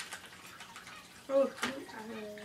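Soft handling noise from a squeezable face-mask sachet: faint clicks and squishy crinkles. About a second and a half in, a short spoken "Oh" is the loudest sound.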